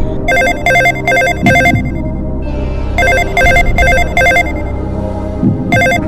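Telephone ringing: a trilling ring tone in two runs of four short pulses each, about a second and a half apart, with a third run starting near the end, over background music.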